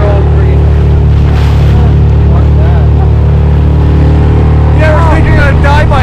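Small outboard motor on an inflatable boat running steadily at speed. A person's voice comes in near the end.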